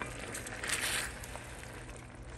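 Wooden spatula stirring and scraping seafood around a cast-iron wok over a simmering sauce, loudest just under a second in.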